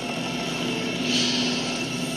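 Film soundtrack from a ship scene: a steady low drone, with a brief hissing rush about a second in.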